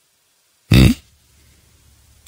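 A man's single short, questioning "hmm?", a little under a second in.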